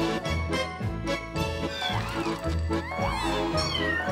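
Kittens meowing: several short, high-pitched meows that each rise and fall, starting about halfway in, over background music with a steady bass line.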